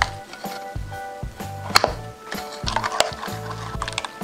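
A metal spoon stirring coconut milk in a ceramic bowl to dissolve the sugar, clinking sharply against the bowl a few times, the loudest clink about two seconds in. Background music with a steady beat plays throughout.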